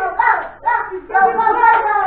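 Several voices, adults and children, singing together with hands clapping along.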